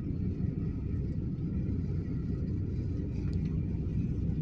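Steady low rumble with no distinct events, the kind of noise made by wind on the microphone or a vehicle.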